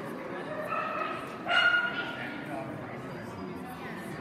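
A dog gives one short, high-pitched bark about one and a half seconds in, over faint voices.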